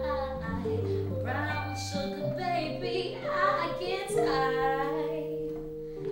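A woman singing a soul song with strong vibrato over sustained electronic keyboard chords and bass notes, in several short held phrases. Near the end her voice drops out and the keyboard chord rings on.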